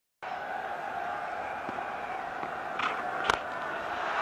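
Steady hum of a stadium crowd, with a single sharp crack a little after three seconds in: a cricket bat striking the ball.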